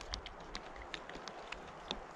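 Faint, scattered crunching clicks of a dog gnawing at a deer carcass's bones and dried hide.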